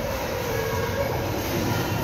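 Steady, echoing din of an indoor swimming pool: children kicking and splashing with foam noodles, with faint voices mixed into the wash.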